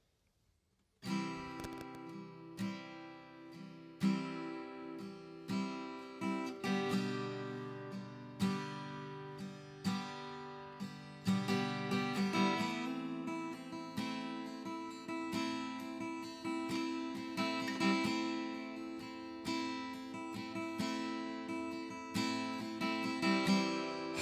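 Acoustic guitar playing the slow instrumental intro to a ballad, chords plucked one after another and left ringing, starting about a second in.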